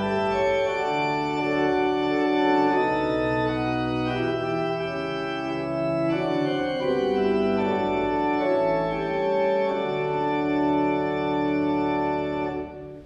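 Organ playing slow, held chords that change every second or two.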